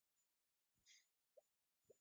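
Near silence: the recording is all but silent, with only a few very faint, brief specks of sound.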